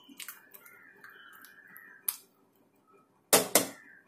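Metal ladle stirring thick curry in a pressure cooker pot, with light clicks of the ladle against the pot and two sharp knocks in quick succession about three and a half seconds in.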